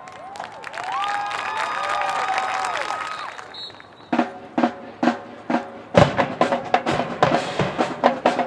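Marching band horns holding chords that slide up and down in pitch for about three seconds, then fading. From about four seconds in, the drumline comes in with spaced hits, building into a fast snare and bass drum pattern from about six seconds.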